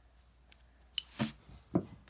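Handling an opened cardboard shipping box: near quiet, then a sharp click about a second in, followed by two soft knocks as the flaps are moved.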